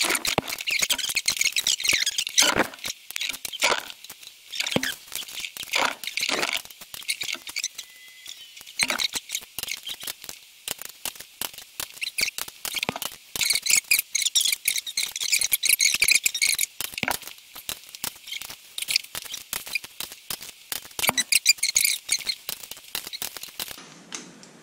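Click-type torque wrench ratcheting and clicking as the head-stud nuts on a small-block Ford cylinder head are tightened one after another: rapid, irregular metallic clicks throughout. Each sharper click of the wrench marks the set torque (the first 35 ft-lb step) being reached.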